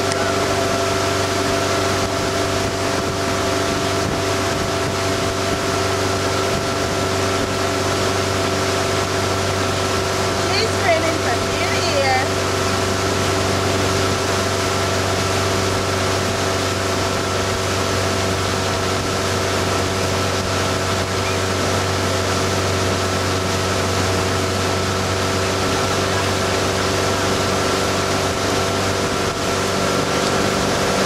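Tow boat's motor running steadily at speed, a constant drone over the rush of water and wind.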